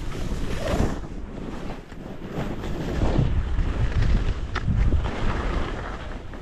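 Skis hissing through fresh powder snow in swelling surges as the skier turns, over a steady low rumble of wind on the microphone.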